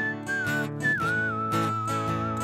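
Whistled melody over a strummed acoustic guitar: a single clear whistle steps down in pitch and settles into a long held note in the second half, while the guitar keeps a steady strum.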